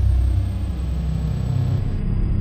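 A low, steady rumble from the outro's added sound effect or music bed, with a faint high tone gliding downward above it.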